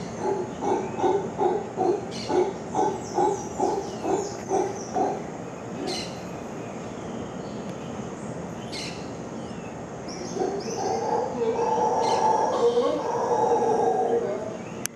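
Mantled howler monkeys calling: a run of low, rhythmic grunts at about three a second for the first five seconds, then after a lull a long, drawn-out roar that builds about ten seconds in. High bird chirps sound over them.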